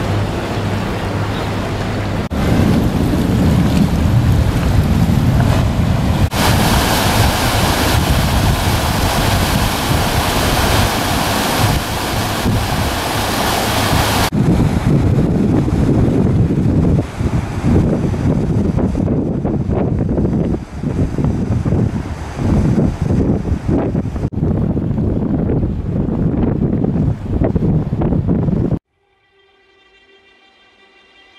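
Wind buffeting the microphone on a moving boat, with rushing water beneath, a loud gusty rumble that shifts abruptly a few times and cuts off suddenly near the end.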